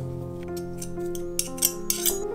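Handheld metal garlic press crushing garlic cloves, with three short sharp clicks and crunches in the second half, over steady background music.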